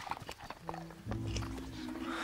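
The hippogriff's feet scuff and knock on the ground in a few short steps, then the orchestral film score comes in with low sustained notes about halfway through.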